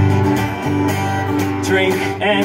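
Live acoustic guitar strumming about four strokes a second over sustained electric bass notes, in a folk-country song.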